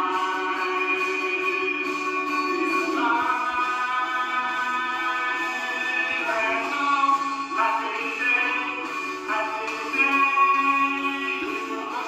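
Recorded singing with instrumental backing played through the Iiyama T2252MSC monitor's built-in speakers, in long held notes. The sound is thin with almost no bass, since the monitor speakers do not reproduce the bass and drums.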